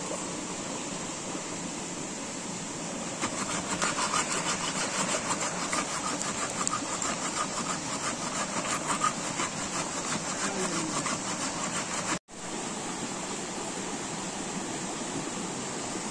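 Rapid rasping of a blade worked back and forth across the top of a wooden log, starting about three seconds in and breaking off suddenly after about twelve seconds, over the steady rush of a stream.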